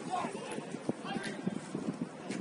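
Football players shouting on the pitch over a quick series of short thuds from feet and ball on artificial turf.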